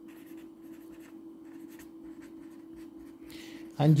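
Pen scratching on paper on a clipboard as a word is handwritten, a run of short scratchy strokes over a faint steady hum.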